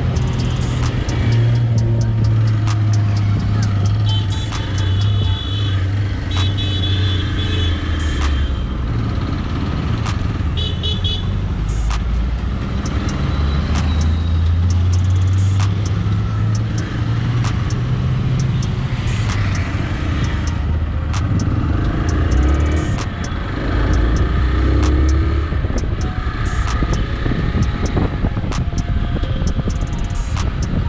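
Hero Xpulse 200's 200 cc single-cylinder four-stroke engine running under way, its note rising and falling with throttle and gear changes. Vehicle horns honk several times about four to eight seconds in and once more around eleven seconds.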